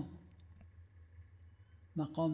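A pause in the talk: a faint steady low hum with a few soft clicks early on, and a voice trailing off at the start and starting again at the very end.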